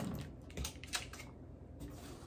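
A few faint, scattered clicks and taps of objects being handled and set down on a table.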